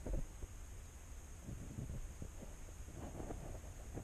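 Quiet steady hiss with a low rumble, a soft thump at the start and a few faint rustles and taps in the middle, from a handheld camera being moved around.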